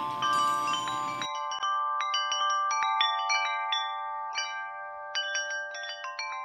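Small brass bells of a water bell fountain ringing as the floating bells knock against the stationary ones, many struck tones overlapping with long rings over a faint hiss of flowing water. About a second in the water hiss cuts out suddenly and clear bell strikes go on ringing.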